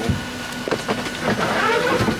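Cloth rustling and scraping right against the microphone as a knit blanket is handled over it, over the steady drone of an airliner cabin.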